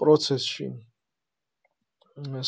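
A man's voice speaking for about a second, then dead silence.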